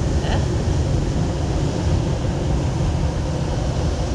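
Wind buffeting the microphone and rushing water on a moving river-rafting ride: a steady rushing noise with a heavy low rumble.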